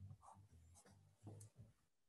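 Near silence, with faint low tones and a few light scratchy noises.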